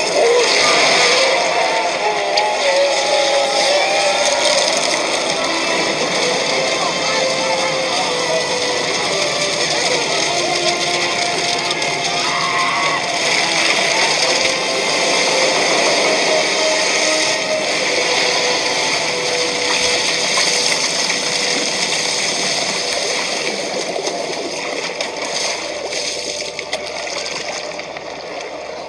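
Film soundtrack: a long, wavering, voice-like wail over a dense, steady rush of noise, with music underneath; it eases off near the end.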